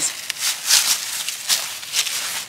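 A few footsteps crunching and rustling through dry leaves and scattered wood debris, the loudest step about two thirds of a second in.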